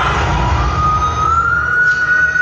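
Pre-recorded soundtrack of a stage dance performance played over the hall's speakers: a single high siren-like tone that slides up about a second in and then holds steady, over a low rumble.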